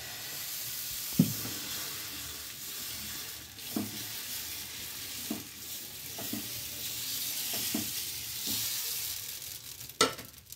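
Dosa batter sizzling steadily on a hot tawa griddle as a ladle spreads it in a spiral. A few short knocks of the ladle on the pan come through; the loudest is about a second in.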